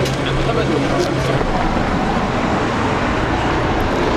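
City street traffic noise with people's voices in the background; a steady low hum drops away about a second and a half in.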